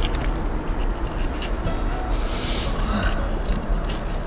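Gloved hands scraping and crumbling loose soil, small scattered scrapes and clicks over a steady low rumble.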